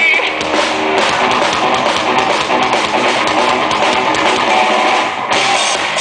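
Live rock band playing loud, with distorted electric guitars and a full drum kit in a mostly instrumental passage. The cymbals grow brighter about five seconds in.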